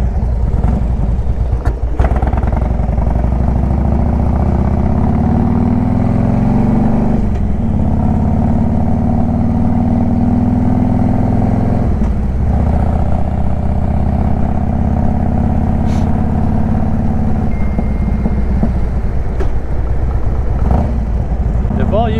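Harley-Davidson Road King Classic's V-twin engine running under way, loud and steady. Its note builds up and then dips sharply twice, about seven and twelve seconds in, as with gear changes, then runs on evenly.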